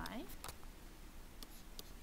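A stylus writing on a tablet surface, heard as a few light taps and scratches.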